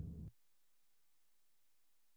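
Near silence: a faint trace of room noise that cuts to dead silence about a third of a second in.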